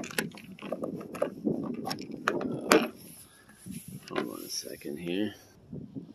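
Flat screwdriver prying up the plastic cover strip of a 2010 Honda Pilot roof rail: plastic scraping with quick clicks and snaps as the cover's clips pop loose, the loudest snap a little under three seconds in.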